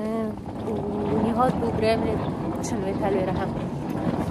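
A woman's voice over a steady, rough noisy rumble that grows a little under a second in.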